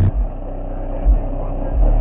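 Skar Audio EVL car subwoofers playing a song's deep bass inside the car cabin: three low bass hits, one near the start, one about a second in and one near the end.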